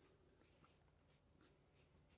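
Faint, short scratching strokes of a pen writing a signature across a cotton T-shirt.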